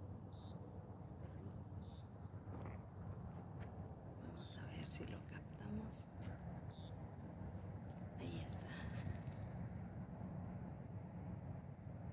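A small songbird singing faintly in several short, high phrases spaced a few seconds apart, over a steady low rumble.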